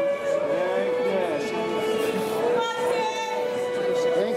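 Music with a singing voice: a long held note runs under a sung melody.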